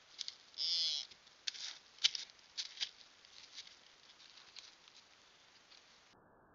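A blacktail deer moving through dry leaf litter and brush: a short rushing burst under a second in, then a scatter of rustles and crackles from its steps that fade away over the next few seconds.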